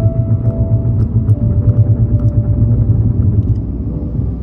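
Loud low rumble of a moving car, fluttering in level, that eases shortly before the end. Faint steady music notes run underneath.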